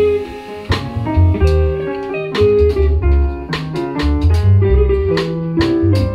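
Jazz trio playing: upright double bass plucked with strong low notes, piano, and a drum kit with regular cymbal strokes.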